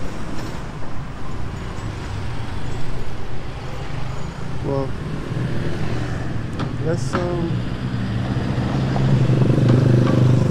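Street traffic of motor scooters and cars, their engines running in a steady low hum that grows louder over the last few seconds as a vehicle comes close. Brief snatches of voices cut in around the middle.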